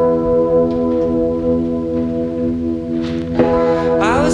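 Trebly electric guitar chord through a small amp, left ringing with a long, bell-like sustain, then strummed again about three and a half seconds in.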